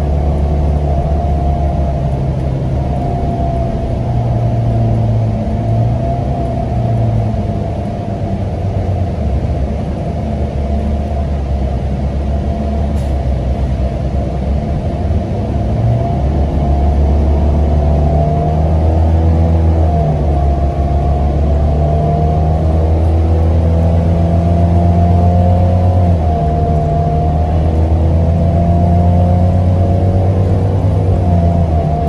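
A NABI 42 BRT transit bus heard from inside while under way: a low engine drone with a drivetrain whine that rises and falls with speed. It eases off from about eight seconds in and gets louder again from about sixteen seconds.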